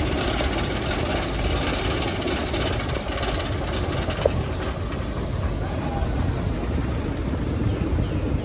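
Great Coasters International wooden roller coaster train running along its wooden track, a steady low rumble.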